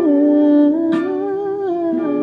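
A woman humming a slow wordless melody, long held notes stepping gently up and down in pitch, over a plucked guitar backing track. A sharp plucked note rings out about a second in.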